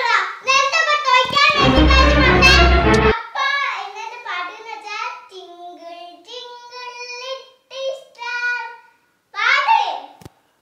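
A young girl singing a song, holding long, steady notes in the second half. About a second and a half in, a loud burst with heavy bass underneath cuts across the singing for about a second and a half, and it is the loudest thing heard.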